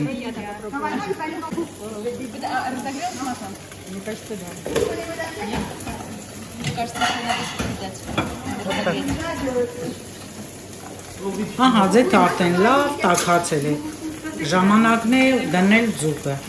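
People talking over a light sizzle of oil in a hot frying pan on a gas burner. The voices grow louder and clearer in the last few seconds.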